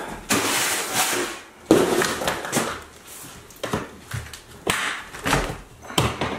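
Rustling and clattering of things being handled and moved, with a sharp knock about two seconds in.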